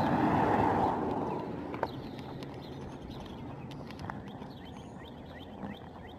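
Bicycle riding along a street: a rush of wind and rolling noise that fades over the first second and a half, then a lower steady background with a few faint clicks and short high chirps.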